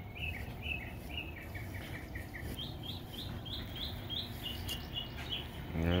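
A songbird singing a rapid series of short, down-slurred chirps, about three to four a second. About halfway through, the series shifts to a higher-pitched phrase. A steady low background rumble runs beneath it.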